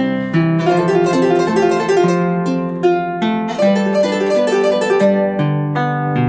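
Paraguayan harp played solo: a quick run of plucked melody notes over a moving line of lower bass notes, the strings ringing on between plucks.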